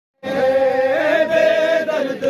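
Men's voices chanting an Urdu noha, a Shia mourning lament, unaccompanied, with long held notes. It starts abruptly just after the beginning.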